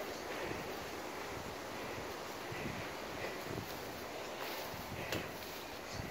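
Quiet outdoor background: a steady faint hiss of wind and rustling, with a few soft brief rustles or knocks.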